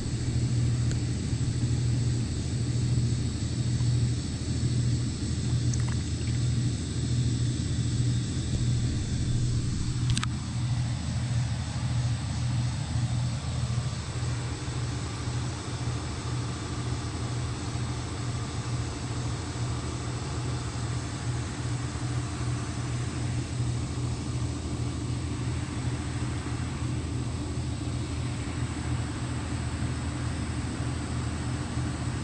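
An engine running steadily at idle, a low hum that eases off slightly in the second half.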